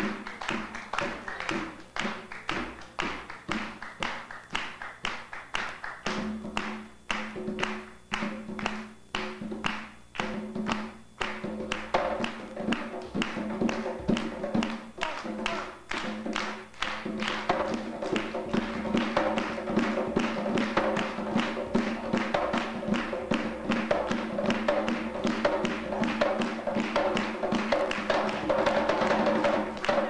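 Tall Haitian hand drum struck with bare hands in a steady rhythm, about two to three strokes a second, with a low ringing under the strokes. About twelve seconds in, the drumming grows denser and louder.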